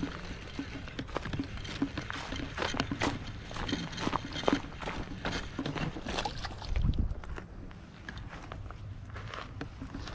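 A small largemouth bass being reeled in and landed from a dry dirt pond bank: irregular clicks, scuffs and footsteps, with a dull thump about seven seconds in.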